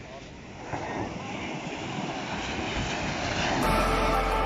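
Small ocean waves breaking and washing up on a sandy shore, the rush growing louder, with wind on the microphone. Background music comes in near the end.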